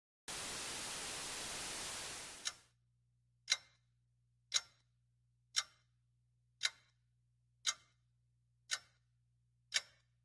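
Steady hiss that fades out about two and a half seconds in, then a clock ticking about once a second over a faint low hum.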